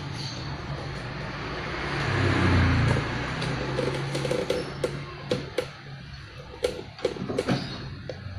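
A small hand tool clicking and scraping against a metal fitting on a wooden box, with a run of sharp clicks in the second half. A low rumble swells and fades about two to three seconds in.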